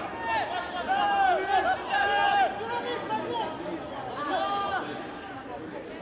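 Several voices shouting short calls over one another, with no clear words, loudest in the first couple of seconds and fading toward the end.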